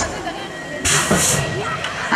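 BMX start gate dropping about a second in, a short sharp noisy burst, with voices around it.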